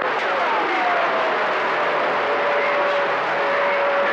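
CB radio receiver on channel 28 giving out steady band hiss between transmissions. About a quarter second in, a whistle glides down from a high pitch and settles into one steady tone that holds to the end.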